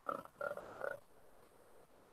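A man's voice making three short, wordless vocal sounds, each about a quarter second long, within the first second.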